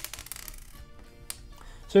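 Quiet background music with a few sharp clicks of small plastic LEGO pieces being handled, one at the start and one just over a second in.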